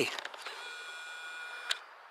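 Camera lens zoom motor whining steadily for just over a second as the shot zooms in, stopping with a small click.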